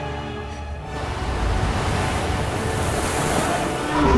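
Series soundtrack: held music chords, then from about a second in a building rush of surging ocean water with a deep rumble underneath.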